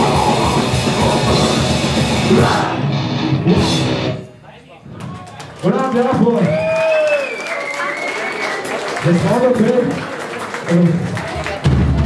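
Live heavy rock band playing loud distorted music that cuts off about four seconds in; after a short lull the audience cheers and shouts, with scattered voices.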